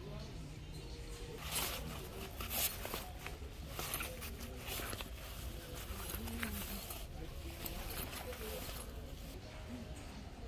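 Fabric courier bag rustling as it is handled, in several short bursts over the first half and again briefly near the end. Under it run a steady low store hum and indistinct voices.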